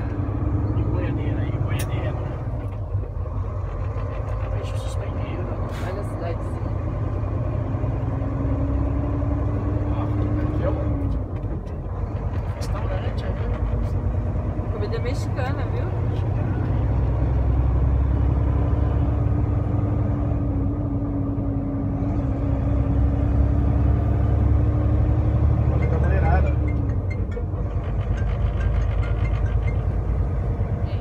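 Semi-truck tractor heard from inside the cab while driving: a steady low engine and road rumble, with an engine tone that climbs slowly and drops off twice, about a third of the way in and again near the end, as the truck changes speed.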